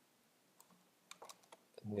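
A few faint, separate computer keyboard key clicks while text is being selected in a code editor.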